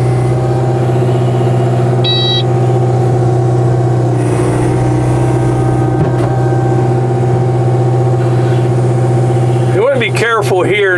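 Kubota KX057-4 mini excavator's diesel engine running steadily under hydraulic load as the boom and bucket swing over. A short electronic beep comes about two seconds in.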